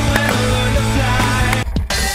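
Background rock music with a steady beat; its upper range cuts out briefly near the end.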